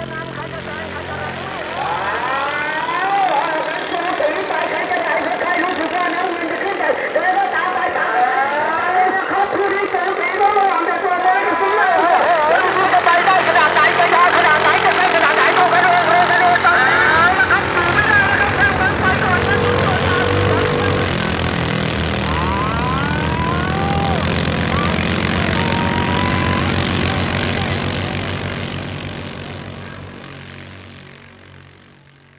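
Modified rice-tractor engines running hard as they race through a muddy paddy, with lively shouting voices over them. The engines pulse louder about two-thirds of the way through, and everything fades out near the end.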